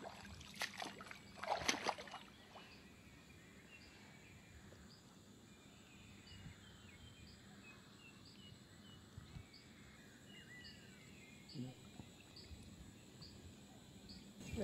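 Faint outdoor dusk ambience: a high-pitched insect chirping steadily, about three chirps every two seconds, with faint twittering calls in between. A few brief louder noises come in the first two seconds.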